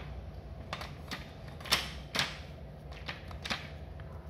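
A handful of sharp, separate clicks and knocks from something being handled, about six over four seconds with the loudest a little before the middle, over a faint low hum.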